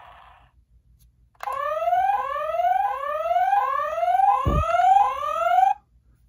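Batmobile toy's electronic sound effect from its small speaker: a rising whoop repeated about every three quarters of a second, like an alarm. It starts about a second and a half in and cuts off near the end, with a short low thump partway through.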